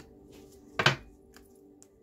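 A single sharp slap of a tarot card set down on the table, a little under a second in, over faint steady background music.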